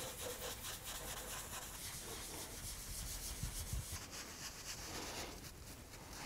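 Faint, quick repeated rubbing strokes of a dye-soaked applicator pad working water-based dye into wet vegetable-tanned leather.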